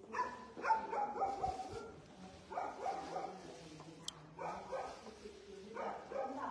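A dog barking and whining in about four short bouts, the pitch falling within each.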